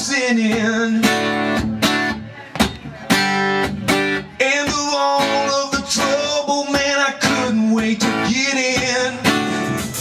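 A man singing a song while strumming chords on an acoustic guitar.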